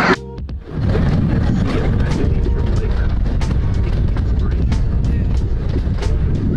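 Open-air miniature park train running along its track: a steady low rumble with irregular short clacks.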